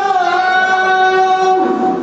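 A single voice holding one long sung note that wavers slightly just after the start and stops near the end.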